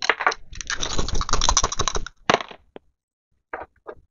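Two dice rattling and clattering as they are shaken and rolled: a dense run of clicks for about two seconds, then a few scattered clicks as they come to rest.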